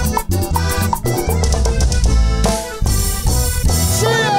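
Live guaracha band playing a dance medley with a steady beat on drum kit and percussion, with accordion.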